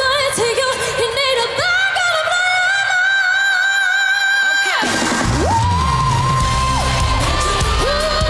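A female pop singer belting a long, sustained high note over backing music. About five seconds in the audio cuts abruptly to a different passage with a heavy bass and beat under another held sung note.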